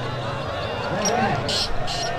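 Chatter of a large outdoor crowd, several men's voices talking over one another, with two short hissing sounds near the end.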